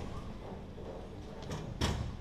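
Bowling alley background: a low steady hum, broken by a sharp knock near the end.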